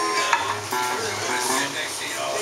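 Acoustic guitar picking a few short, quiet notes between chords, over a steady hiss of room noise.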